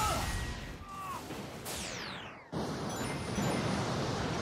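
Cartoon battle sound effects over orchestral-style score: a crash, then a falling whoosh about halfway through. After a brief cut-out, a sudden loud explosion-like rush of noise follows and carries on.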